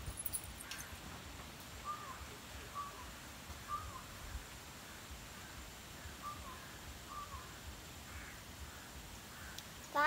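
A bird calling outside in short, repeated single notes, about five of them spread over several seconds, against a faint background.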